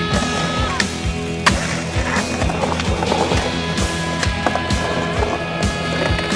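Skateboard on concrete: wheels rolling and the board clacking, with a couple of sharp clacks in the first second and a half. Music with a steady beat plays along.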